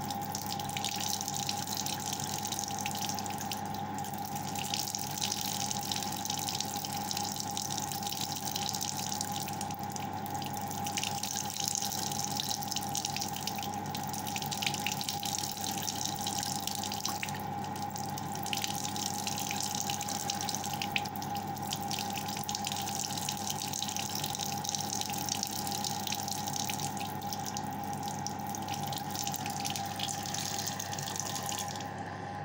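Hot water running steadily from a tap and splashing over an arm, with irregular small splashes and drips and a steady hum underneath.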